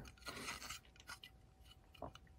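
Faint rubbing of fingers on a plastic model-kit interior part as it is turned in the hands, in the first second, followed by a few light clicks.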